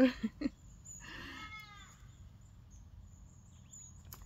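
A short laugh, then about a second in a single drawn-out animal call that falls in pitch.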